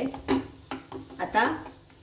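Wooden spatula scraping and pressing a moist bhajani-flour and onion mixture around a nonstick pan in a few short strokes, with a light sizzle of hot oil under it.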